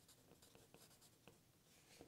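Faint scratching of a wooden pencil on paper as a word is written, a few soft strokes.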